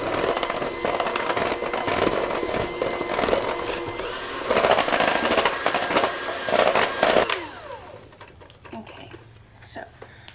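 Electric hand mixer running with a steady whine, its beaters churning cake batter in a stainless steel bowl, then switched off about seven seconds in, the motor winding down.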